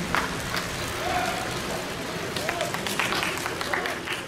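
Indistinct background voices over open-air ambience, broken by a few short, sharp clicks or claps.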